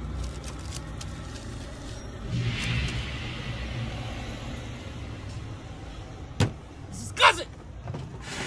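Steady low outdoor background rumble, with a hiss rising briefly about two and a half seconds in. A sharp click comes about six and a half seconds in, and a short, louder sound falling in pitch follows about a second later.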